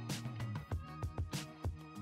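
Background music with a steady beat: a drum pattern over a bass line and sustained instrument notes.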